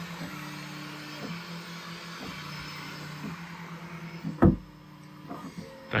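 Bambu Lab X1 Carbon 3D printer printing, its stepper motors humming in steady tones that jump to a new pitch about once a second as the print head changes direction; really loud. A single sharp thump about four and a half seconds in, after which the sound is quieter.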